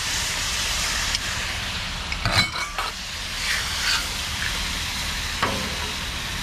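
Sauce and cornstarch slurry sizzling on a hot steel flat-top griddle, a steady hiss, as a metal spatula scrapes and stirs the stir-fry across the plate. There is a brief clatter of the spatula about two and a half seconds in.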